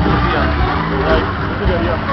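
A 1975 MACK Musik Express ride running at speed: its cars rumble round the undulating track under loud fairground music and a voice over the ride's sound system.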